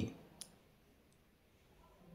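Near silence in a pause of the voiceover, broken by one faint, sharp click about half a second in and a fainter tick a little later.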